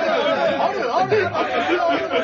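Speech only: voices talking over one another.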